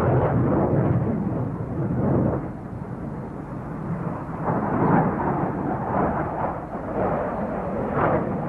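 Jet noise from an SR-71 Blackbird in flight: a low rushing rumble that dips about two and a half seconds in and swells again about five seconds in.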